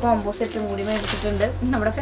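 A woman talking in Malayalam, with the crinkle of a clear plastic wrapper as a packed stack of T-shirts is handled.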